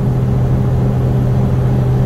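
Steady low drone of a semi-truck's diesel engine cruising at highway speed, with road noise, heard from inside the cab.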